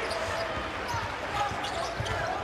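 A basketball dribbled on a hardwood court: a run of low bounces over steady arena crowd noise.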